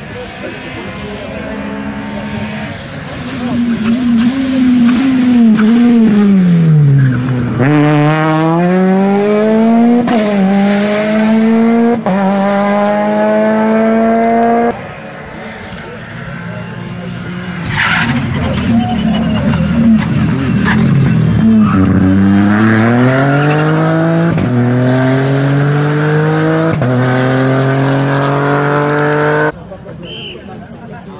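Two rally cars pass one after the other. Each engine note drops as the car slows for the corner, then climbs through three quick upshifts as it accelerates away. The first pass cuts off suddenly about halfway through.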